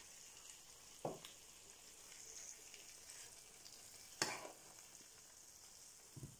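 A metal spoon scooping thick vegetable sauce out of a frying pan and onto a plate, with two sharp clinks of the spoon on the dishware, about a second in and just after four seconds, over a faint steady sizzle from the pan.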